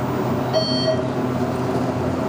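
Steady machine hum inside a ThyssenKrupp hydraulic elevator cab, with one short electronic beep about half a second in.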